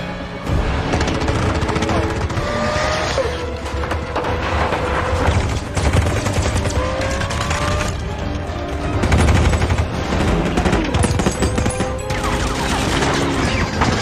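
Action-film soundtrack mix: rapid machine-gun fire over engines revving, with a musical score underneath.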